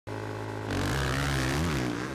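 Motocross bike engines held at steady revs on the start line, then revving hard as the bikes launch from the start about two-thirds of a second in, the pitch rising and wavering.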